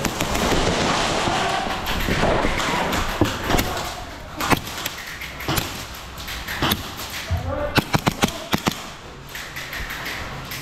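Gas-blowback airsoft pistols firing: sharp single shots spaced out from about three seconds in, then a quick string of five or six shots near the eight-second mark.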